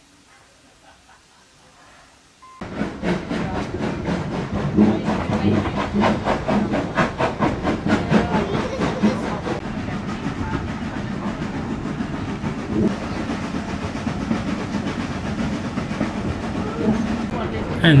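Steam train running, heard from inside a passenger carriage: a fast, even beat of sharp strokes over a steady low rumble, starting suddenly about two and a half seconds in after a quiet start.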